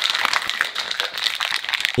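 Ice cubes rattling hard inside a stainless steel cocktail shaker as it is shaken to mix a drink: a fast, continuous clatter that stops at the end.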